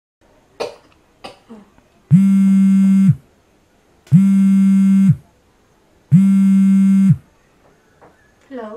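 Mobile phone ringing: three identical buzzy electronic tones, each about a second long and two seconds apart, loud and steady. A couple of faint clicks come before the first ring.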